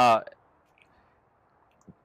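A man says a hesitant "uh", then a pause with only faint background hiss. A soft click comes just before he starts speaking again.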